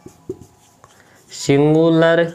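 Felt-tip marker writing on a whiteboard: a few short, faint strokes and taps during the first second and a half. A man's voice then comes in loudly near the end.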